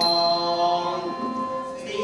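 Thai classical ensemble performing with a slow sung melody of long held notes, the pitch shifting about a second in and again near the end.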